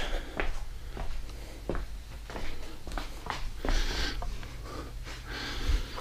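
Scattered soft knocks and clicks with brief rustles from handling a bubble-wrapped model jet and foam padding inside a wooden crate.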